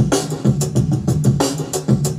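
A hip-hop beat built from a heavily chopped drum break, playing back over speakers: a busy, even run of drum hits over a low steady part.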